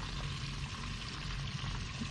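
Battered redfish frying in hot oil: a steady sizzle, with a low hum under it.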